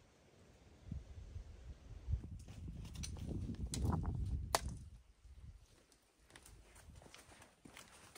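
A hiker's footsteps on a rocky trail, with the metal tips of trekking poles striking stone in a few sharp clicks. A low rumble swells under the steps in the middle of it, then fainter steps and taps follow.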